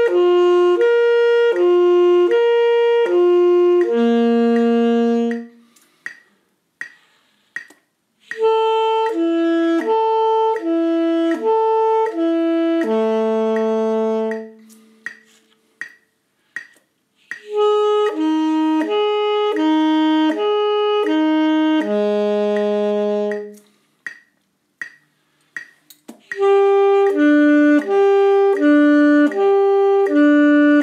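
Saxophone playing a lip-flexibility warm-up exercise in four phrases with short pauses between. Each phrase slurs back and forth between two notes four times, then holds a long low note, and each phrase starts a little lower than the last.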